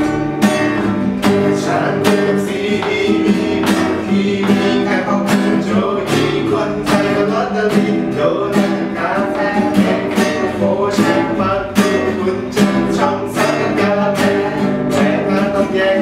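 Acoustic guitars strummed in a steady rhythm, with a voice singing a pop melody over them.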